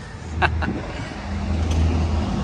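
A road vehicle's engine running on the street, a low steady rumble that builds from about half a second in and is loudest near the end.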